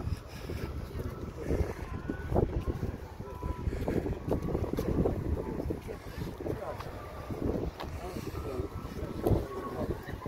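Wind buffeting the microphone in an uneven, rumbling rush, with faint voices in the background.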